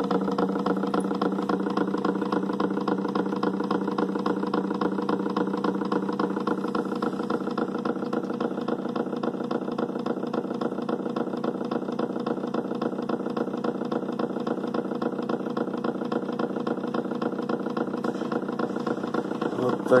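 Homemade magnet-motor rig running: a small electric motor with a round magnet spins a washing-machine pulley fitted with eight magnets, topped by a heavy Zhiguli car flywheel. It gives a steady, even hum with a fast pulsing in it, unchanging throughout.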